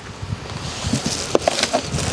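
A bag rustling and crinkling as a hand rummages in it.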